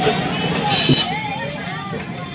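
Crowd of many people talking over one another, with street vehicle noise underneath.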